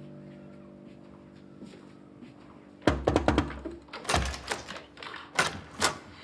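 Faint held music fading out, then from about three seconds in a run of sharp knocks and clicks with one heavy thud a second later: a wooden apartment door being handled, knocked on, opened and shut.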